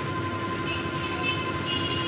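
Motorised stirring machine churning peanuts in hot jaggery syrup in an iron kadai: a steady mechanical hum, with a faint high tone coming in partway through.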